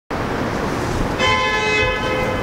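Street traffic noise, with a vehicle horn starting a little over a second in and held as one long steady honk.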